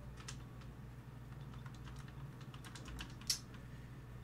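Computer keyboard typing: a string of light, irregular key clicks, with one louder click about three seconds in.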